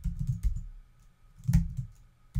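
Typing on a computer keyboard: a quick run of keystrokes, a brief pause about a second in, then a few more keystrokes.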